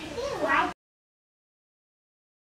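A short, pitched voice-like call that glides up and down in pitch, cut off abruptly under a second in, followed by complete silence.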